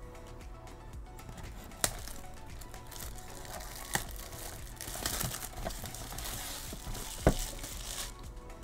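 Plastic shrink wrap on a cardboard trading-card box being slit with a box cutter and peeled off. It crinkles, most thickly in the second half, and there are three sharp clicks, the loudest near the end. Soft background music plays under it.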